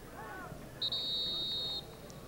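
Referee's whistle blown once, a single steady high note about a second long, stopping play.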